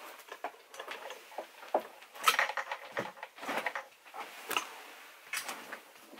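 Irregular soft clicks, knocks and rustles of a person moving about a small room and handling things, with a few sharper knocks in the middle.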